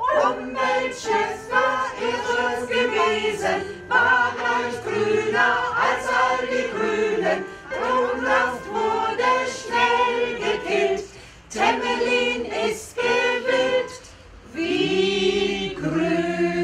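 Small mixed amateur choir of men and women singing a cappella, a German-language parody song set to an Alpine rumba tune, in short phrases that end on a held chord near the end.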